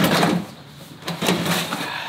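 A large hard plastic cooler set down in a pickup truck bed and slid across the ribbed bed liner: a scrape at the start and a second, longer scrape about a second in.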